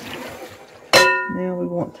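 Whisk stirring batter in a glass mixing bowl, then about a second in a single sharp clink of the whisk against the glass bowl, which rings briefly with a bell-like tone.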